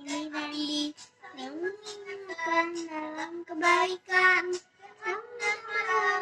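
A child singing a melody in several short phrases of held notes, with brief breaks between them.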